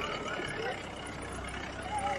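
Mahindra Scorpio SUV's engine running low and steady as it drives slowly past, with voices faintly in the background.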